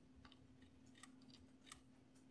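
Near silence: faint room tone with a low steady hum and a few faint clicks, about one second in and near the end.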